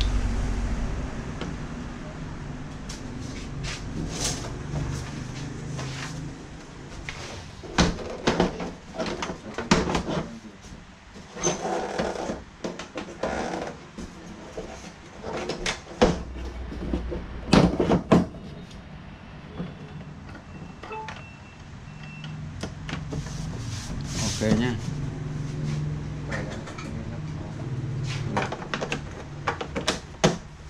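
Plastic back cover of a Samsung TV being fitted and pressed into place: handling clatter with a series of sharp plastic knocks, the loudest around the middle.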